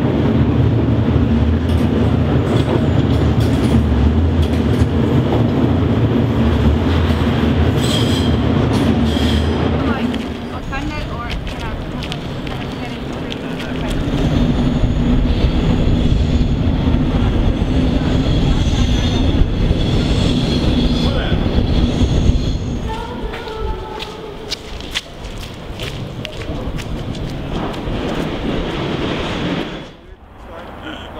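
A train running on rails, loud and heavy in the low end for the first ten seconds, then thinner, with a high wheel squeal coming and going and many sharp clicks and clatters.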